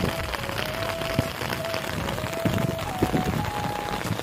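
Steady rain falling, an even hiss, with a thin held tone that wavers slightly in pitch over it.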